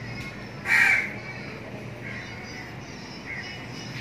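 A crow cawing: one loud, harsh caw about a second in, followed by a few fainter caws, over a steady low background hum.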